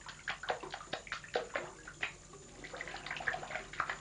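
Bath water splashing as hands, a baby's and an adult's, move and slap in a shallow bathtub: a quick, uneven run of small splashes and drips.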